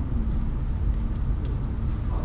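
Low, steady rumble of background room noise with a faint steady hum, and a couple of faint clicks in the second half.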